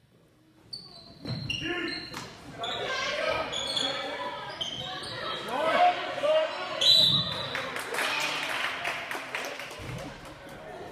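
Live basketball play on a hardwood gym court: sneakers squeaking, the ball bouncing, and players and spectators calling out, echoing in the hall. It starts almost silent and picks up about a second in.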